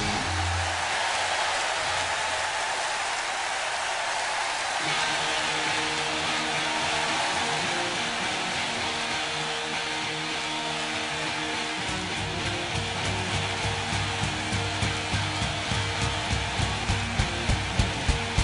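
A heavy rock band playing live: a wash of cymbals and held guitar chords. A low bass note comes in about two-thirds of the way through, then a bass drum beat of about two strokes a second that grows louder toward the end, building into a song.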